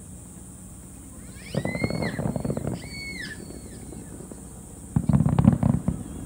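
Aerial fireworks crackling in two bursts, one about a second and a half in and one near the end. Two short high whistling tones sound over the first burst.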